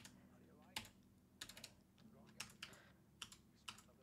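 Faint computer keyboard key taps, about ten of them, irregularly spaced, as a selected element is nudged into place.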